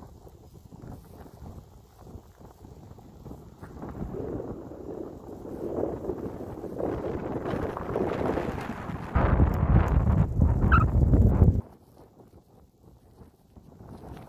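Wind buffeting the phone's microphone in gusts, building up over several seconds into a loud low rumble about nine seconds in that cuts off suddenly two or three seconds later.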